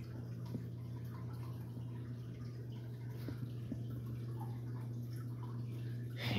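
Aquarium sponge filter bubbling, its air stream breaking at the water surface with small drips and trickles, over a steady low hum.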